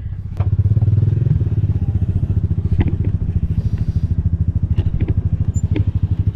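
An engine idling with a fast, even low pulse that starts just after the beginning and holds steady, with a few light knocks over it.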